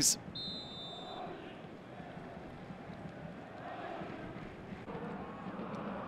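Stadium crowd at a football match, a steady din of many voices, with a short, steady, high referee's whistle blast near the start that signals the kick-off of the second half.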